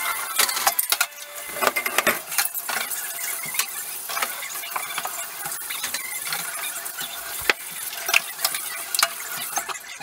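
Dishes and cutlery clinking and clattering as they are rinsed at a kitchen sink and put into a dishwasher, over the steady hiss of running tap water.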